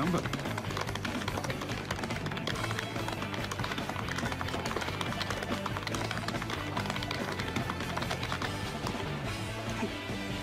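Rapid, continuous tapping on the plastic keys of a Casio desktop calculator, many irregular clicks a second, under background music with a steady low line.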